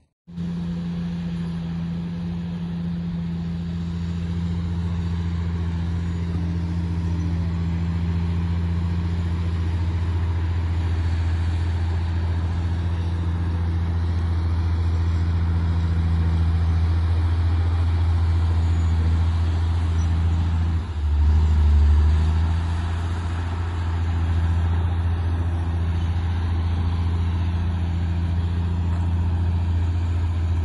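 A heavy diesel engine of earthmoving machinery running steadily with a low hum, briefly getting louder about two-thirds of the way through.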